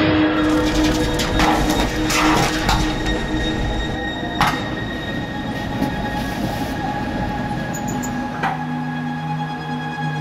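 Tatra tram wheels squealing and rumbling on the rails, with sharp knocks about four and a half and eight and a half seconds in, under background music.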